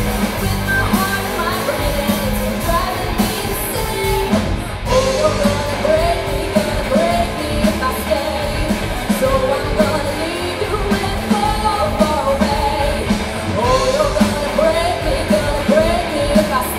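Live rock band playing: a female lead vocalist singing over two electric guitars, electric bass and a drum kit keeping a steady beat.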